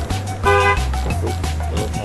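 A car horn gives one short toot about half a second in, over background music with a heavy, steady bass beat.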